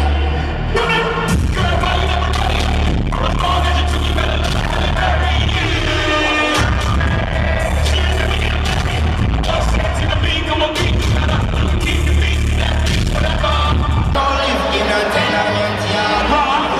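Live rap concert music over an arena PA, recorded from the upper seats: a heavy bass beat under a rapped vocal. The bass drops out briefly about six and a half seconds in and again near the end.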